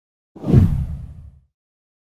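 A swoosh transition sound effect with a deep low rumble under it, swelling up about a third of a second in and fading away over the next second.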